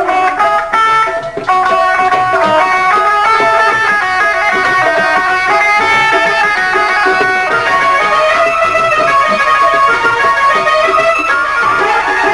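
Instrumental passage of live Punjabi folk music, led by a plucked string instrument playing a quick melody of short notes. The sound dips briefly in the first second and a half, then stays full.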